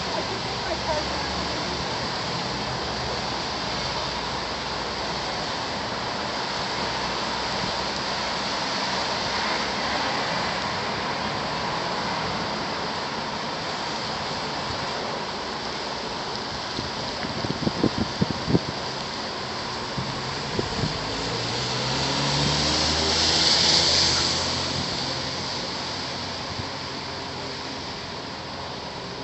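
City traffic on a rain-wet street: a steady hiss of tyres on wet pavement under a general street hum. A quick run of sharp clicks comes a little past halfway. Then a vehicle passes close, its wet-tyre hiss and engine swelling and fading over about three seconds near the end.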